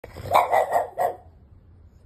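French Bulldog puppy barking four short, quick barks in the first second, demanding to be let up onto the bed.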